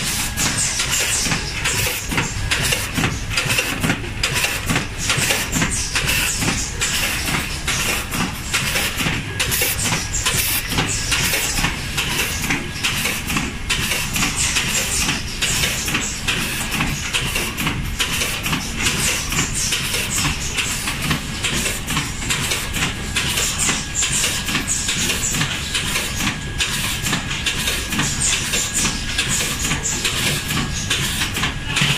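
Automatic tube filling and sealing machine running, a continuous mechanical clatter of rapid clicks and knocks with a faint steady high tone.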